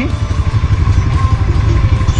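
Segway ATV engine idling at a standstill in low gear with 4x4 engaged, a steady, slightly uneven low rumble.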